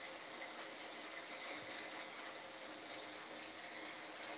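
Faint steady hiss with a few thin steady tones: the background noise of an open video-call audio line in a pause between speech.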